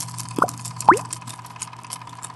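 Logo-sting sound effects: two quick upward-gliding plops about half a second apart, the second louder, over a steady electronic hum with faint crackling clicks.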